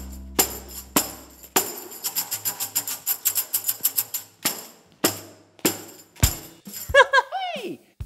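Handheld tambourine with metal jingles (zills), struck and shaken: a few separate hits, then a quick run of shakes in the middle, then single hits about every half second. The last note of a music jingle fades out at the start.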